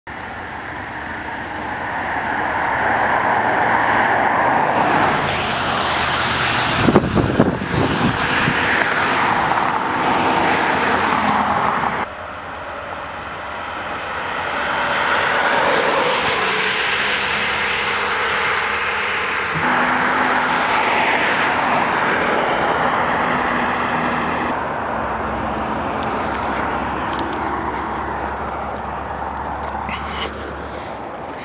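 Road traffic: cars passing at speed, the tyre and engine noise of each one swelling and then fading as it goes by. There are a few sharp knocks about seven seconds in, and the sound cuts off abruptly a few times.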